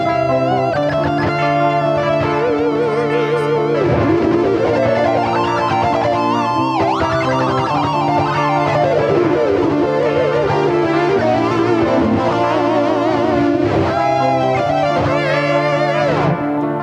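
Electric guitar through a BOSS ME-70 multi-effects unit in looper mode: a recorded chord part repeats underneath while a lead line is played over it, with wide vibrato and bends. There are two long falling pitch sweeps, about four and seven seconds in.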